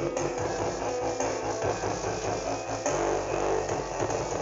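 Recorded music with a prominent bass line, played through a Dexon 800-watt audio system at about a quarter of its volume.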